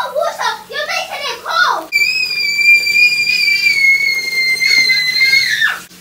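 A girl's high-pitched voice calling out, then a long shrill scream held on one steady pitch for about four seconds that sinks slightly and drops away at the end.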